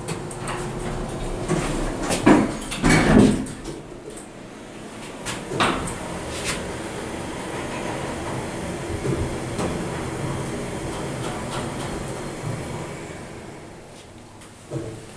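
Dover hydraulic elevator: the door closes with two loud knocks about two and three seconds in, then the car runs down to floor 1 with a steady hum that fades as it slows to a stop near the end.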